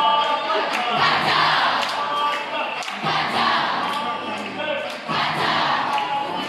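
A group of voices singing together, with a steady beat about once a second.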